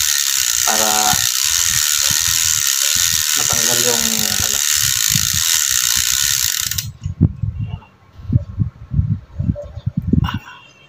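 Bicycle freehub ratcheting in a fast, steady buzz as the cassette spins backward while the crank is back-pedalled. It stops abruptly about seven seconds in, followed by a few low knocks.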